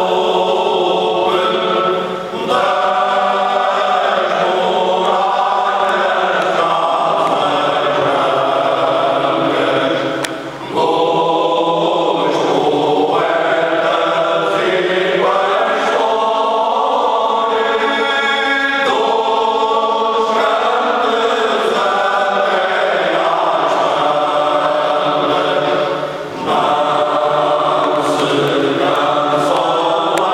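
Men's choir singing Alentejo cante unaccompanied, in long held phrases. The singing dips briefly three times, at phrase breaks.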